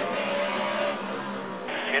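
NASCAR Cup car's V8 engine running at a steady pitch, heard through an in-car camera. Near the end, a spotter's voice comes in over the team radio.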